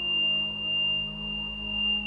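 Meditation background music: a steady, high, pure ringing tone held over a low humming drone that swells and fades in slow, even pulses.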